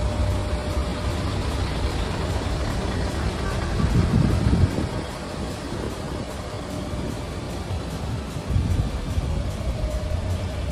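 Low, steady rumble of idling diesel trucks with music playing over it, and a brief louder rumble about four seconds in.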